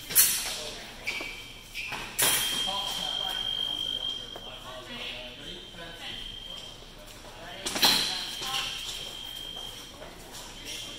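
Electronic fencing scoring-machine tones: steady high beeps sounding several times, the longest about two seconds each, two of them right after sharp knocks of blades or feet. Voices murmur faintly underneath.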